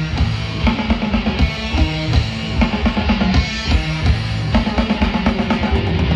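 Live hard rock band playing an instrumental passage: electric guitar over a drum kit, with no vocals.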